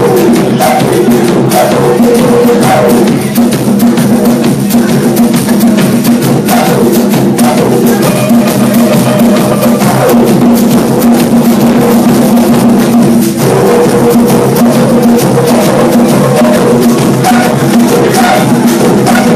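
A live band playing loud music, led by a drum kit's steady beat of drum and cymbal hits over sustained pitched notes from the other instruments.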